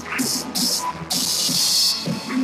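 A live worship band playing with a drum kit, singers on microphones; long cymbal washes stand out high above the music, the longest starting about a second in.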